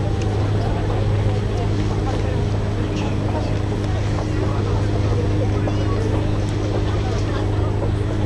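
A boat's engine running with a steady low drone and a few overtones, joined by faint voices of people.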